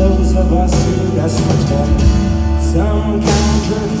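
A rock band playing live, with bass, guitars and drums, and a male voice coming in to sing near the end.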